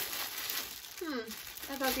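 Thin clear plastic packaging bag crinkling as it is handled, irregular and noisy through the first second or so.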